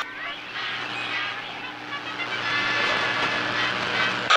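Short-wave radio static between transmissions: a steady hiss and crackle over a low hum, growing a little louder after the middle, with faint music underneath.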